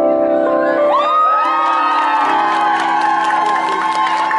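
A keyboard's final chord held and ringing out as the song ends, with an audience starting to cheer and whoop about a second in.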